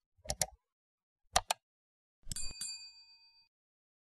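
Animated subscribe-button sound effects: three pairs of quick mouse clicks about a second apart. The last pair is followed by a bell chime that rings for about a second, the sound of the notification bell being clicked.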